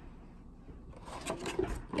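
Clear plastic blister tray of a trading-card box being handled and lifted out, with soft rubbing and a few light plastic clicks in the second half.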